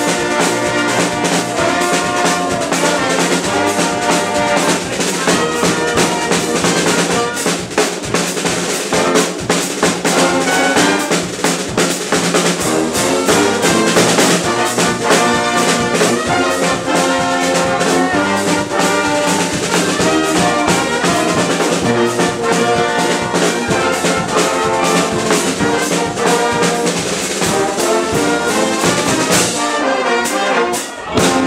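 Dweilorkest brass band playing live: trumpets, trombones, baritone horns and sousaphone over snare and bass drum.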